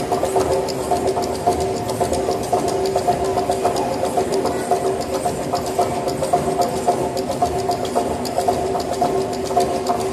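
Live tribal dance percussion: fast, even drum beats over steady ringing tones that hold one pitch throughout.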